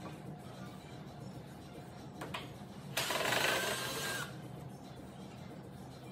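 Work on the wooden frame of a mirror being taken apart: a couple of small clicks, then a loud rasping burst lasting about a second, a little past halfway.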